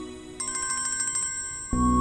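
Mobile phone ringtone for an incoming call: a quick, high repeated chime starts about half a second in, then a louder melodic ring tune begins near the end.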